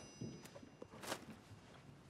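Faint footsteps and soft rustling of clothing, with a short breathy hiss about a second in. A high chime-like note rings on and dies away in the first half second.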